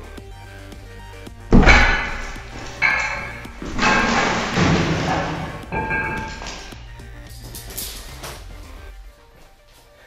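A neodymium super magnet tearing free of its stack of steel plates under about 260 pounds of load. About a second and a half in there is a sudden loud crash, then several more clangs with metallic ringing over the next few seconds as the steel rig and plates hit the floor. Background music plays underneath.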